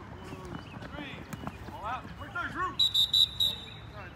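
Distant voices of players calling out across the field. About three seconds in, a whistle sounds in a quick trill of several short blasts, the loudest sound here.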